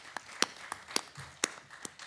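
Hand clapping: a few loud, separate claps, roughly two a second, over lighter scattered clapping.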